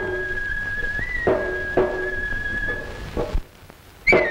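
Kabuki ensemble music: a noh flute holds one high, shrill note that lifts briefly about a second in, over three sharp, ringing tsuzumi hand-drum strikes. The flute and drums stop near the end.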